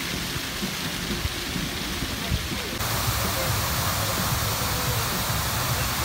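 Public fountain jets splashing into their basin: a steady, dense rush of falling water. It turns louder and brighter about three seconds in, as a closer spray takes over.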